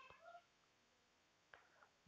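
Near silence: room tone, with a few faint brief tones near the start.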